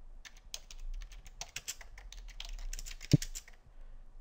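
Typing on a computer keyboard: a quick, uneven run of key clicks that stops near the end.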